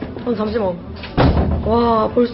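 People's voices, with one sudden loud thud a little over a second in.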